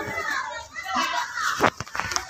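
Children's voices talking, with a few short clicks near the end.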